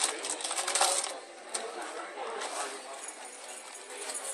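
Fruity Pebbles rice cereal rattling in its box as the box is tipped to pour. There is a dense burst of small clicks for about the first second, then a quieter rustle.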